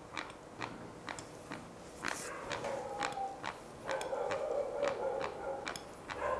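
Regular light ticking, about two or three clicks a second, with a faint muffled sound joining in over the second half.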